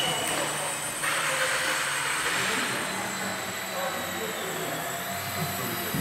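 Electric motors and propellers of indoor radio-controlled model planes whirring in a sports hall's echoing space, with a louder stretch of noise starting about a second in.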